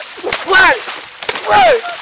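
Voices yelling loudly, with about two high cries that fall in pitch, mixed with a few sharp smacks and water splashing as two men wrestle and fall into a waterlogged field.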